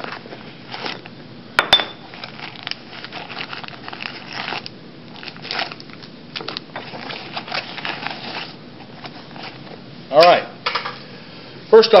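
Rummaging in a nylon shoulder bag's pocket: fabric rustling and scraping with small hard objects clicking and clinking. A short vocal sound about ten seconds in.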